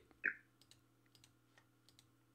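A few faint computer keyboard and mouse clicks, including the Escape key press. They follow one brief, louder sound just after the start.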